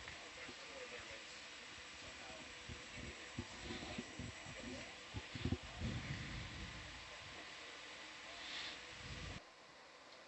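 Faint control-room background: a low murmur of distant voices over steady hiss and a thin electrical hum, with a few low knocks in the middle. The background noise drops away suddenly near the end.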